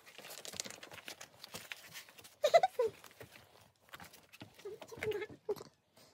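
Short non-word vocal sounds from a person, about two and a half seconds in and again near five seconds, over scattered scuffs and clicks of people moving on rock.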